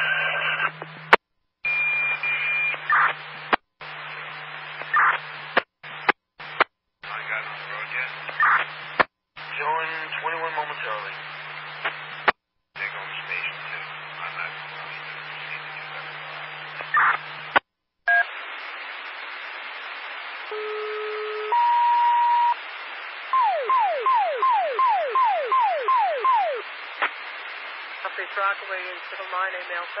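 Scanner radio traffic: unclear radio voice transmissions that cut in and out abruptly over a low steady hum, for about the first seventeen seconds. Then come dispatch alert tones: a brief pair of steady tones, then a single steady tone, then about eight quick falling chirps.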